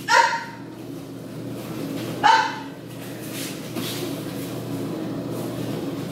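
Two short, sharp kiai shouts from aikido practitioners exchanging a technique, one right at the start and one about two seconds in, each falling in pitch. A steady low hum runs underneath, and faint knocks of feet and bodies on the tatami follow.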